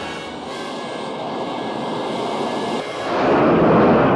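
Navy jet engine at full power during a catapult launch from an aircraft carrier deck, a rushing noise that builds and is loudest from about three seconds in. Orchestral music plays faintly underneath.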